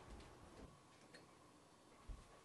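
Near silence: room tone with a few faint, short ticks in the first second.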